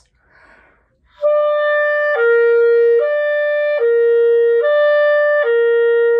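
Clarinet slurring back and forth between middle E and middle C, six steady notes (E, C, E, C, E, C) starting about a second in after a faint breath. The note changes are clean, with no blip between them: the pinky and ring finger are moving as one through finger leading.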